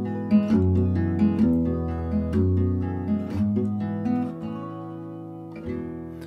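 Solo acoustic guitar playing an instrumental passage, notes and chords struck at an even pace, growing quieter over the last couple of seconds.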